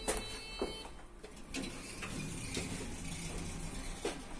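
KLEEMANN passenger lift: a floor button is pressed and gives a short electronic beep with clicks. About a second and a half in, the stainless steel car doors slide shut under the door operator's motor hum, closing with a knock at the end.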